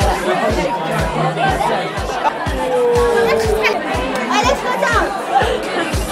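Crowd chatter in a busy pub, many voices talking at once over music with a steady beat of about two low thumps a second.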